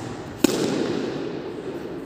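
Tennis ball struck with a racket: one sharp pop about half a second in, echoing around an indoor tennis hall.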